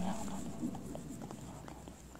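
Faint rustling and scattered soft knocks of a large congregation going down into prostration on a carpeted floor, just as the echo of the imam's amplified 'Allahu akbar' dies away.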